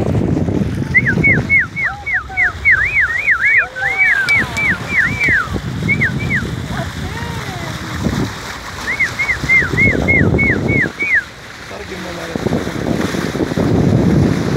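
A person whistling at dolphins: quick runs of short, falling whistle notes, several a second, in two bursts with a gap between. Under the whistling is a steady rush of water along the sailboat's hull.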